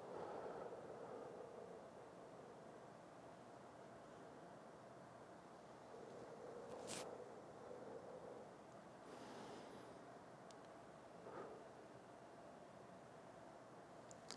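Near silence with a man's faint, slow breathing: a soft exhale at the start and another about six seconds in, with a faint click and a brief hiss a little later.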